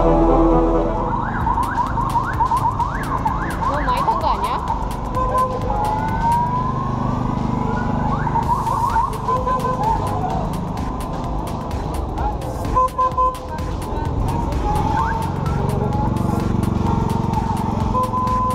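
Siren-like wails: many short rising whoops that repeat and overlap, with a longer, slower rising wail in the middle, over crowd chatter.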